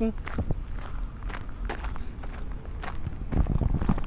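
Footsteps crunching on a gravel path at an irregular walking pace, over a low wind rumble on the microphone.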